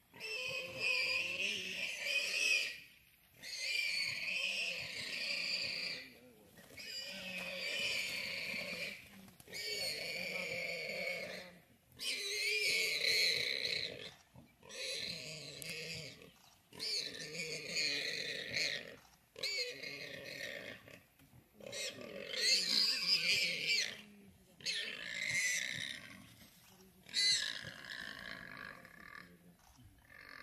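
Warthog squealing in distress while gripped by a leopard: about a dozen long, high-pitched squeals, each roughly two seconds, with short gaps between them.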